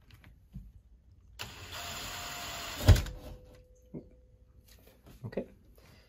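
Cordless drill running for about a second and a half as it bores a mounting hole in the wall, ending in a sharp loud knock; a few light clicks follow.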